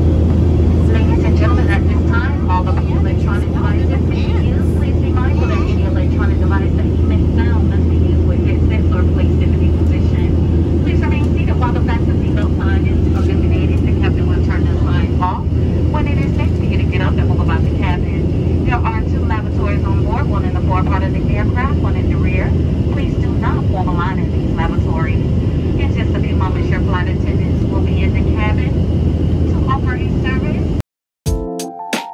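Steady low drone of a jet airliner's engines and airflow, heard inside the passenger cabin, with indistinct voices talking over it throughout.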